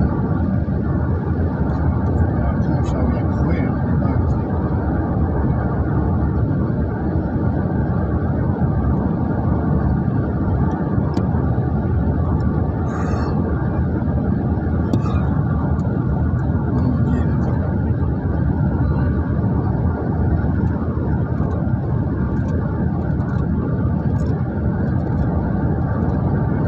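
Steady road and engine noise heard from inside a vehicle moving at speed, a low, even rumble that holds at one level throughout, with a few faint clicks.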